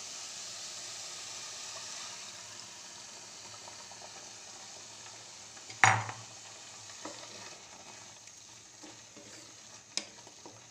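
Sizzling as cold milk is poured onto hot grated carrots in a pan, a steady hiss that slowly fades as the milk cools the pan. A wooden spatula knocks the pan sharply once about six seconds in, followed by a few light stirring ticks.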